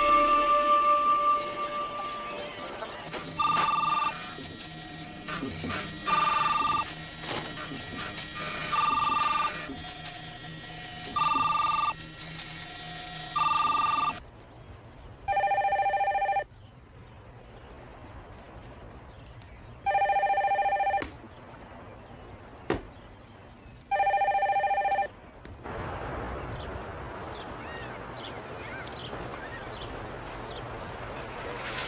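Telephone ringing: five short electronic trills about every two and a half seconds, then three longer, lower-pitched rings about four seconds apart. A single sharp click falls between the last two rings, and a steady hiss follows near the end.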